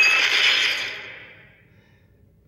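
Action-trailer sound effects: a dense, crashing, clinking hiss with a brief high tone near the start, fading away over about a second and a half.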